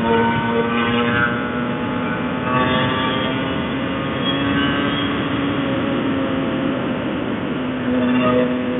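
Honda NSR 150 RR's two-stroke single-cylinder engine running at a steady cruising speed, with wind rush over the microphone; the engine note lifts slightly about halfway through.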